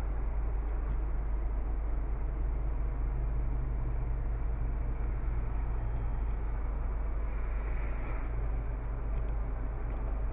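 Steady low hum of a 2013 Toyota RAV4's 2.5-litre four-cylinder engine idling, heard from inside the cabin, with an even hiss over it.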